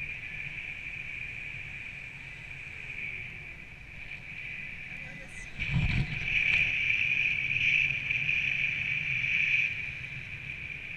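Wind rushing over the action camera's microphone during a tandem paraglider flight: a low rumble with a steady high whistle through it. A thump comes about six seconds in as the camera is swung round. The wind is louder after that and eases near the end.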